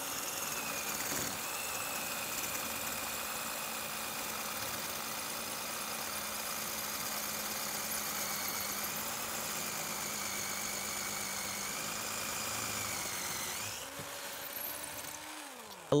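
18-volt cordless drill running steadily as an ARTU multi-purpose masonry bit drills into concrete. Near the end the motor winds down with a falling whine and stops.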